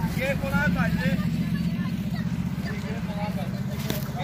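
Engines of cars held up in a road blockade idling, a steady low hum, with people talking and a laugh over it.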